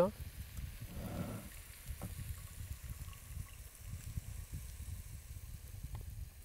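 Low, uneven rumble of wind on the microphone, with a brief low voice-like sound about a second in and a single light knock about two seconds in, as a whole ember-roasted cauliflower is lifted out of a cast-iron pot.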